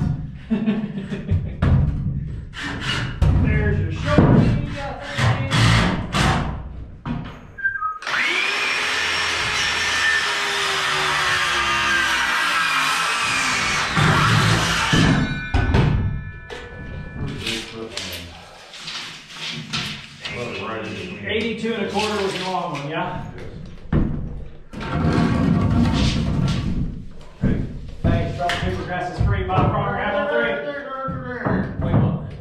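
Power saw cutting framing lumber, running for about seven seconds from roughly a quarter of the way in and stopping abruptly, with sharp knocks from the framing work before it.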